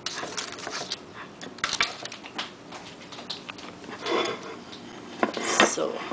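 Scattered light clinks and taps of a ceramic serving platter and dishes being handled on a kitchen counter, as baked cheese sticks are moved about on the platter.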